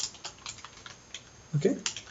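Computer keyboard typing: a quick, irregular run of key clicks as a short word and a number are typed.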